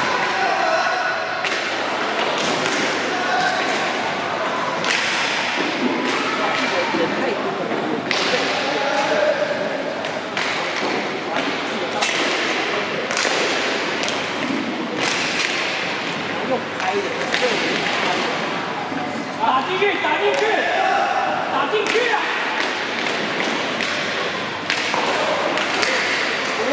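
Inline hockey play: repeated sharp knocks and thuds of sticks and puck striking each other, the floor and the rink boards, scattered through the whole stretch, with voices in the background.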